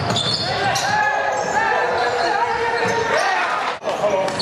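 Basketball game sound: a ball bouncing on the court amid the shouts and calls of players and spectators. The sound drops out for an instant near the end.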